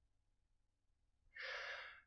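Near silence, then a man's short in-breath lasting about half a second, a little over halfway through.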